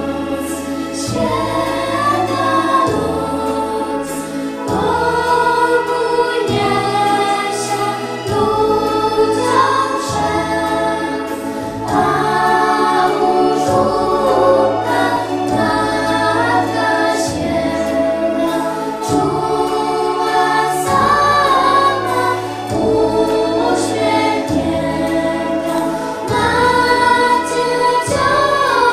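A group of schoolgirls singing a Christmas carol together, accompanied by an electronic keyboard whose sustained bass notes change about every one and a half to two seconds.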